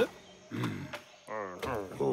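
A cartoon hedgehog character's wordless voice: a few short grunting vocal sounds in quick succession, each bending in pitch.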